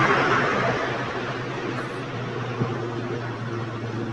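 Road noise of a passing car fading away over the first second, leaving a steady low hum.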